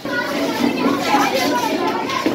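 Many schoolchildren's voices at once, an excited hubbub of talking and calling out that starts suddenly.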